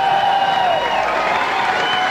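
Concert crowd cheering and shouting between songs, many voices at once with some applause.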